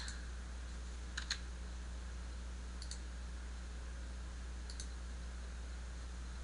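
A few faint clicks from operating a computer's mouse and keyboard: a pair about a second in, then single clicks near three and five seconds, over a steady low electrical hum.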